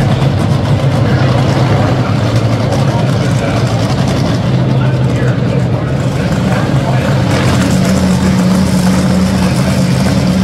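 Two dragsters' engines idling loudly together, a steady low rumble. A higher steady note joins it about seven and a half seconds in.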